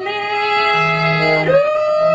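Violin, bass clarinet and trombone playing sustained notes together. The upper line drops at the start and slides upward about a second and a half in, over a low held note in the middle.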